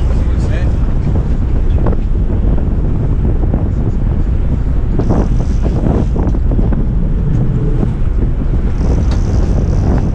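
Wind buffeting the camera microphone over a boat's engine running and water rushing past the hull at sea, with a few brief louder sounds about halfway through.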